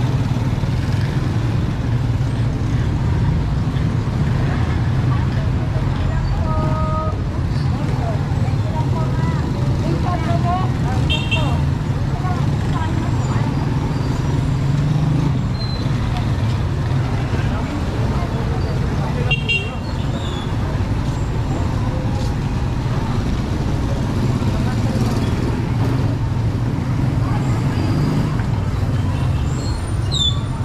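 Street traffic of motorcycle tricycles and motorcycles, their engines running in a steady low hum, with brief horn toots about seven and eleven seconds in. Voices of passers-by murmur faintly.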